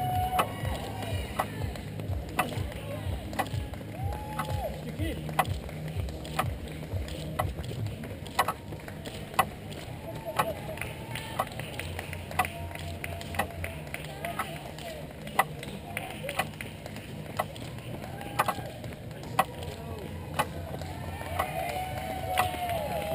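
Roadside spectators cheering runners in a road race: scattered handclaps about once or twice a second and short calls of encouragement, over a low steady rumble.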